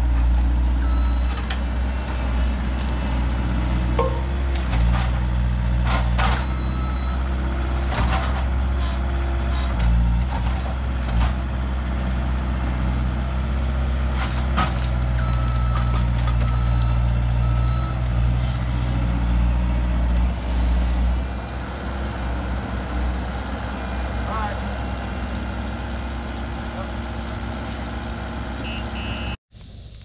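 Bobcat S185 skid-steer loader's diesel engine working under load as it pushes brush and small trees, with branches cracking and snapping several times in the first half. A backup alarm beeps now and then, and the engine eases off about two-thirds of the way through.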